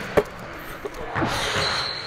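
A basketball bouncing sharply once on a hardwood gym floor, with a fainter knock a little later. Near the end a thin high squeak comes in over general court noise.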